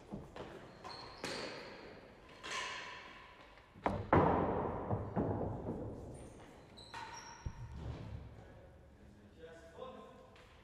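Real tennis balls being hit and bouncing off the court's floor and walls: a series of sharp knocks, each ringing on in the hall's echo, the loudest two close together about four seconds in.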